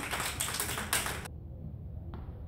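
Rapid clapping, many quick claps close together, stopping abruptly about a second and a quarter in, over a steady low outdoor rumble.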